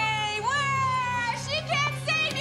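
A child's high-pitched voice holding two long wailing notes, the second sliding up into its pitch about half a second in, over a low steady hum.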